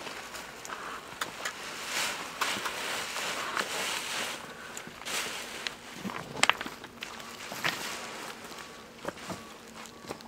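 Footsteps moving through dry scrub on rocky ground: irregular rustling, crunching and snapping twigs and stones, with a few sharper cracks about six and a half seconds in.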